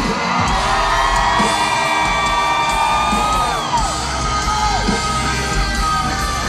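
Live rock band playing at a concert, heard from the crowd: a long held high note rings over the band for about three seconds, then slides down and breaks off, with shouts from the audience.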